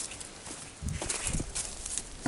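Soft, irregular rustling and a few light knocks of footsteps on dry leaf litter.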